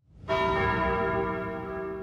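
A single bell chime in the programme's soundtrack music, struck about a quarter second in and ringing away over the next two seconds.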